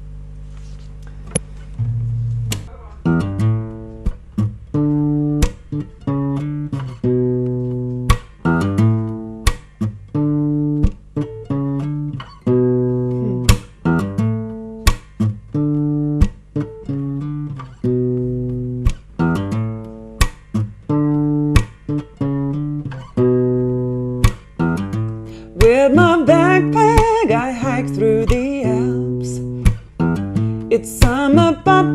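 Acoustic guitar played fingerstyle as a song's introduction: picked notes and chords in an even, repeating pattern. A singing voice joins the guitar near the end.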